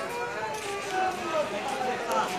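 Crowd babble: many people's voices chattering at once, with a few faint clicks.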